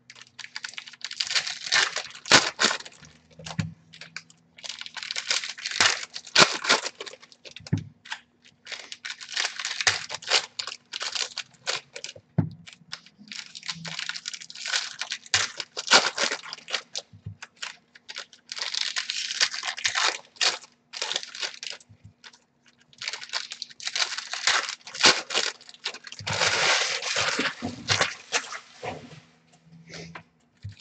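Trading-card pack wrappers being torn open and crinkled while the cards are handled, in irregular bursts a second or two long with short pauses between them. A faint steady hum runs underneath.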